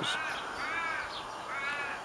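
A bird calling three times, a little under a second apart, each call rising and then falling in pitch.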